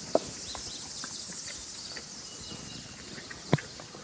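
Small hooves of a two-day-old miniature horse colt stepping on loose straw over dirt: scattered light steps and rustles, with two sharper knocks, one just after the start and one near the end.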